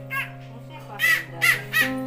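A crow cawing: one short call at the start, then three loud harsh caws in quick succession in the second half, over background music with held notes.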